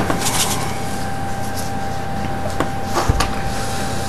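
Plastic containers being handled on a table: a few light clicks and a soft knock about three seconds in, over a steady background hiss with a faint high hum.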